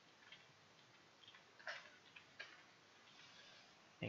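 Faint, irregular clicks of computer keyboard keys being pressed while code is edited, about eight keystrokes in the first two and a half seconds, then only faint room hiss.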